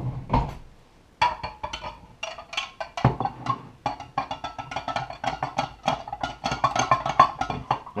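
A metal utensil stirring salt brine in a glass mason jar, clinking rapidly against the glass with a ringing tone. It starts about a second in, as the salt is stirred to dissolve.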